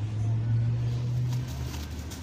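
A low, steady mechanical drone, like an engine running, loudest for the first second and a half and then easing off.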